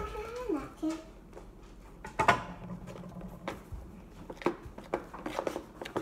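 Shaving-cream slime mixture being stirred in a large plastic bowl with a utensil, heard as scattered clicks and knocks of the utensil against the bowl. There is a sharper knock about two seconds in and a quicker run of clicks near the end.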